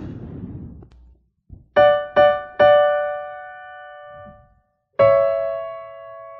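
Yamaha digital keyboard playing a piano voice: three notes struck in quick succession about a second and a half in, ringing and fading, then a chord struck about five seconds in and held.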